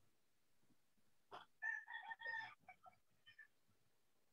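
A rooster crowing faintly in the background, one call of about a second starting about a second and a half in, followed by a few faint clicks.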